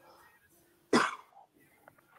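A person coughing once, a short, sudden burst about a second in.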